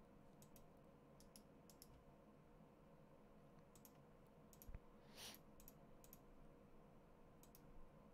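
Faint computer mouse clicks, many in quick pairs, scattered over near-silent room tone, with a short breathy hiss about five seconds in.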